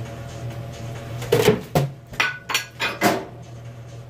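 A cup of hot liquid plastisol, just taken from the microwave, dropped and clattering on the floor: a loud first hit about a second in, then several quicker knocks and bounces over the next two seconds. The cup does not break.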